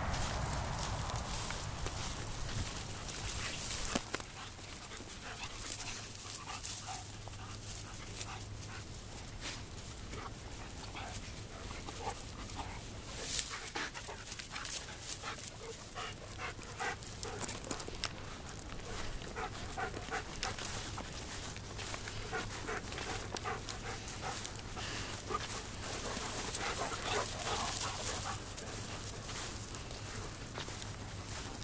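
German Shepherd dogs panting as they run about, with scattered rustling and footfalls in the grass.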